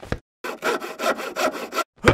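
Hand saw cutting wood: a quick run of rasping back-and-forth strokes lasting about a second and a half, after a short knock.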